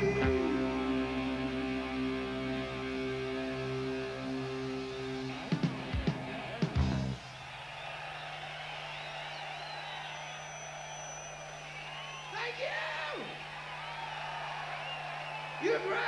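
A rock band's last chord ringing out on electric guitars and bass, with a few final drum hits, all stopping sharply about seven seconds in. After it, a large open-air crowd is heard cheering and yelling over a steady low hum from the stage.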